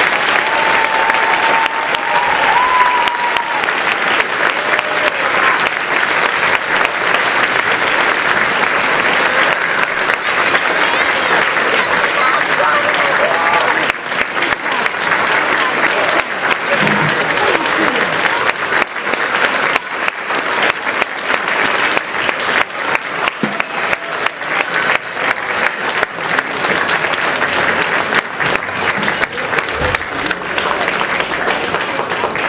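Large audience applauding, dense and steady, thinning a little about halfway through.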